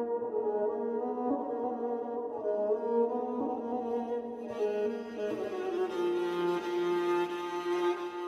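Instrumental background music: a beatless intro of slow, held chords that change only gradually, with a brighter, hissier layer joining about halfway through.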